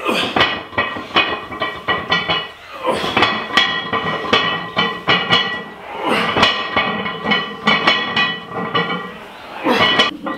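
Loaded barbell plates and sleeves clinking and rattling on the bar through a set of back squats: rapid clusters of metallic clicks with a ringing tone, easing briefly about every three seconds, and a louder clank near the end.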